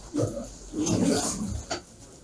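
A black plastic bag rustling and crinkling in irregular bursts as it is handled and passed from hand to hand, with a short knock near the end.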